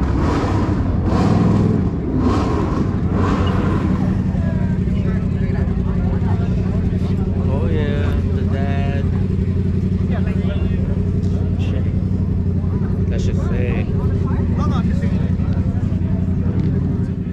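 A car engine idling steadily with an even low hum, with voices of people talking around it.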